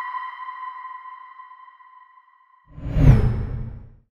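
Bell-like electronic chime ringing out and fading over about two seconds, then a whoosh sweeping in after a short gap, with a brief falling whistle in it, dying away at the end.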